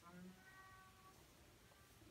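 Near silence: room tone, with a faint, steady pitched sound in the first second or so that fades away.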